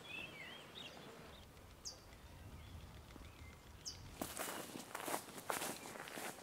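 Faint birds chirping, with two short falling whistles about two seconds apart. From about four seconds in, footsteps crunch on a dry, leaf-strewn dirt trail.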